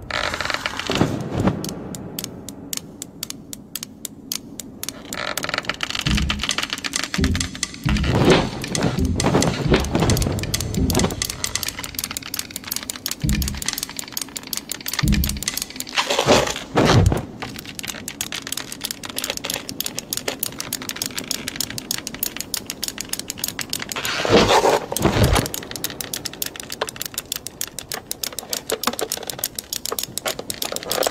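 Soundtrack of an animated short: rapid, even clicking of knitting needles under music, with a few heavier thuds, heard through a video call's audio.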